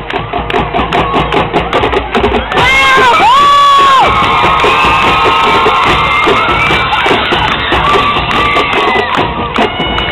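Marching band playing over drum hits, with a loud brass chord that slides up about three seconds in and is held for about a second before breaking off. Further held notes follow. The crowd in the stands is cheering throughout.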